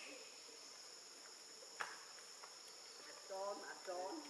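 Steady high-pitched drone of insects in the forest, unchanging throughout, with a single sharp click a little under two seconds in. Near the end a short burst of pitched voices or calls rises over it.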